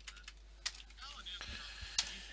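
Computer keyboard keys clicking: a few scattered keystrokes, the sharpest at the very end.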